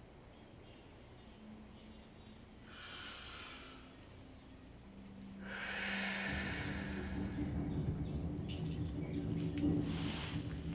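A woman breathing deeply during a stretch: a short breath in about three seconds in, then a louder, longer breath out just past the middle. A low steady hum with held tones comes in with the breath out and stays.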